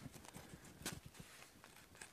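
Faint handling sounds of braided nylon rope being wound and pulled around a blanket-wrapped stick: a few soft ticks and rustles, one slightly sharper a little under a second in.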